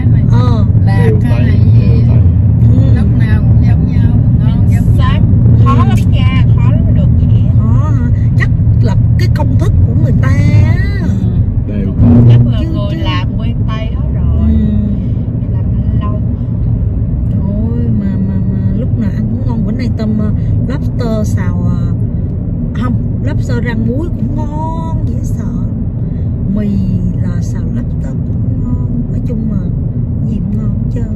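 Steady low road rumble inside a moving car's cabin, with people's voices talking over it and a brief loud knock about twelve seconds in.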